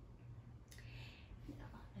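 A quiet room with a steady low hum. A single faint click comes a little under a second in, followed by a brief soft hiss, and a woman's softly spoken word comes near the end.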